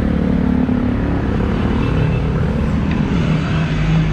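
Street traffic of motorcycles and scooters running past, a loud steady low rumble with engine hum. The hum drops in pitch about two seconds in.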